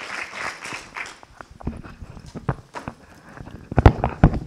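Audience applause dying away, followed by a series of irregular knocks and low thumps, the loudest just before the end.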